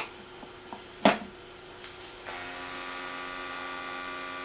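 Honeywell IQ Force gas monitor being pushed into its IQ Force dock: a light click at the start, then a sharp click about a second in as it seats. A little past two seconds a steady electrical hum sets in as the dock connects to the monitor.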